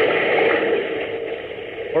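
Radio-drama sound effect of rushing, churning water, a steady noise that slowly fades over the two seconds. It is heard through the narrow, dull sound of an old 1940s transcription recording.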